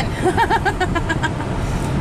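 A person laughing in a quick run of short ha-ha pulses during the first second, over steady road noise inside a moving minivan's cabin.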